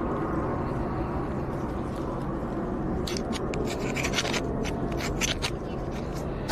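Scratching and rubbing against a camera's microphone as it is handled and carried, in a quick run of short scratchy strokes from about halfway through. Under it is a steady low rumble of street background.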